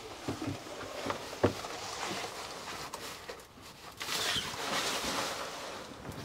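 Fabric shower curtain being slid along its ceiling track, the curtain rustling and its runners sliding, with a few light clicks in the first second and a half and a longer rustle about four seconds in.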